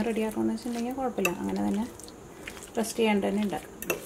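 A woman talking while a metal fork stirs marinated chicken pieces in a glass dish, with a couple of sharp clinks of fork against glass.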